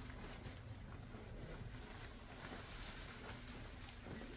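Faint rustling of disposable surgical drapes being lifted and pulled off a draped patient, over a steady low room hum.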